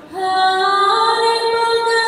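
A woman's singing voice comes in just after the start of a Banjar regional song, holding long notes that step upward over the music.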